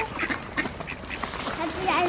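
Ducks on a pond, mallards among them, quacking in many short, overlapping calls. A short laugh comes right at the start.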